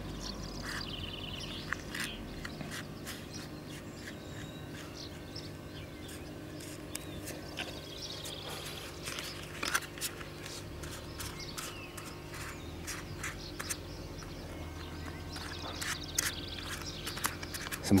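Plastic vinyl-wrap sample swatches clicking and rustling as they are fanned out and handled, with scattered short ticks over a steady low hum.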